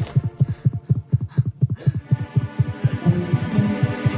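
Rapid heartbeat sound effect in an animated film soundtrack: a fast, even run of low thumps, about six a second, standing for a character's racing heart.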